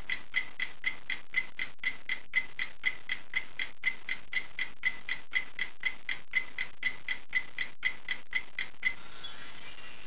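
Clock-ticking sound effect: an even run of quick ticks, nearly four a second, each with a short high ring, stopping about nine seconds in.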